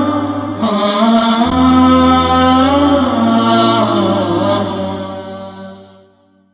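Intro music: a voice chanting long, wavering held notes over a steady low drone, fading out near the end.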